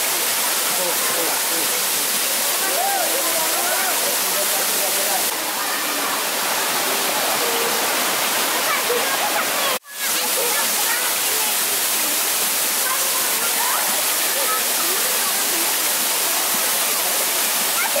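Steady rush of a waterfall and the stream running over rocks, with faint voices of people over it. The sound cuts out for an instant about ten seconds in.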